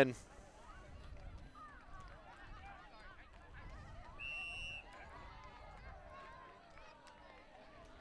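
Faint voices of players and spectators, with a short steady high-pitched tone about four seconds in.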